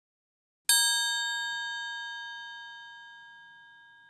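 A single struck bell rings out about three-quarters of a second in, then fades slowly, its several clear tones still ringing at the end.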